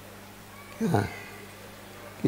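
A man's single short spoken syllable with a steeply falling pitch, between longer phrases, over a faint steady electrical hum.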